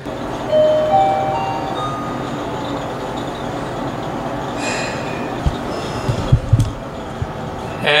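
Elevator car running in its shaft: a steady rumbling noise with a brief whine near the start and a few low thumps in the last third, as the car gets stuck.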